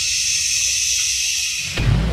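A long, steady hushing "shhh", cut off near the end by a deep boom as music comes in.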